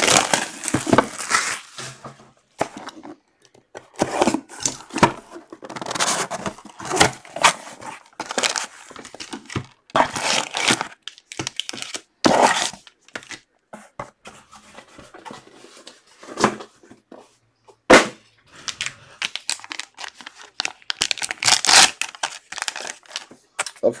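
Packaging being opened by hand: plastic wrap, a cardboard box and a foil pack torn and crinkled in irregular rustling bursts, with one sharp snap about three-quarters of the way through.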